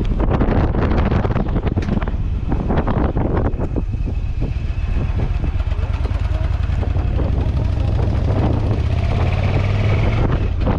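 Yamaha V Star 1100 Silverado's air-cooled V-twin engine running as the bike rides along, with wind buffeting the microphone in gusts for the first few seconds; the engine's low hum grows stronger near the end.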